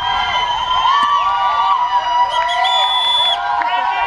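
Crowd of protesters shouting and yelling over one another. A long high held note stands out for about a second midway.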